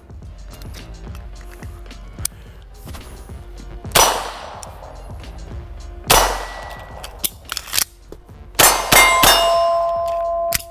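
9mm Beretta 92 pistol shots: two single shots about two seconds apart, then a quick string of shots near the end. Steel targets clang when hit, and one keeps ringing on a steady tone after the last shots.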